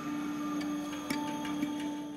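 Closing theme music: a held low drone with a few higher sustained tones, punctuated by sharp ticking clicks, the strongest about a second in and again half a second later.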